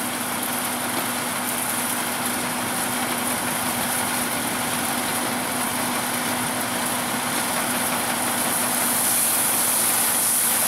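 Nuffield tractor engine running steadily as it tows a Dronningborg D600 trailed combine harvester through wheat, mixed with the combine's threshing machinery: a steady hum over a continuous mechanical hiss, growing a little louder near the end.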